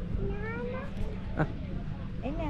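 A short, high call that rises in pitch, with one sharp click a moment later.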